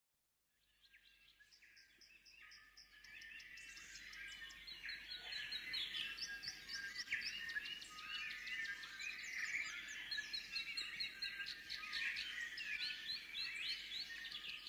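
Forest birdsong: many birds chirping and whistling at once in a dense chorus, fading in over the first few seconds.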